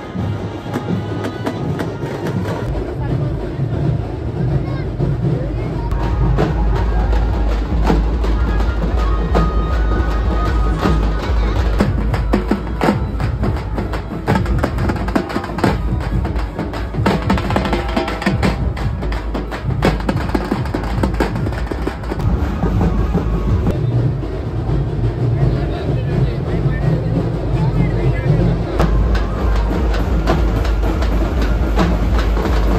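A band of large double-headed procession drums beaten with sticks in loud, dense rhythm, with crowd voices mixed in.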